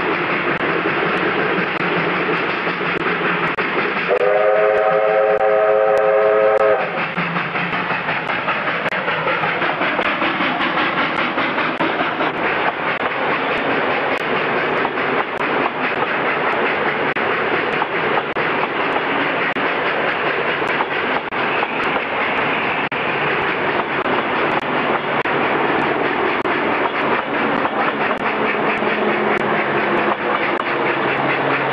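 Steam locomotive working a passenger train: the exhaust and the running of the train make a steady noise. About four seconds in, a multi-note steam whistle sounds for nearly three seconds. Later the train's running carries a faint regular beat.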